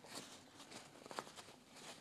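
Faint rustle of a paper tissue being rubbed over the plastic body of a windscreen washer pump, with a few light clicks about a second in.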